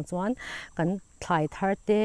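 A woman speaking to camera, with a short pause about a second in, over a faint, steady, high-pitched whine.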